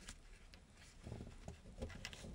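Faint crinkling and small clicks of a folded sheet of origami paper being pinched and creased by fingers, with a cluster of light crackles in the second second.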